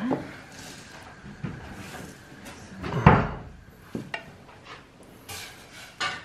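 Plates being set down and moved on a cloth-covered table: a few separate knocks, the loudest a dull thump about halfway through.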